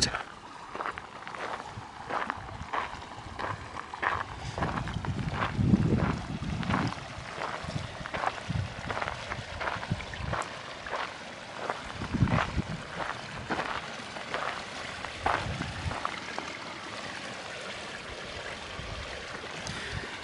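Footsteps crunching on a gravel path, about two a second, with gusty wind rumbling on the microphone, strongest a quarter and a little over half of the way in.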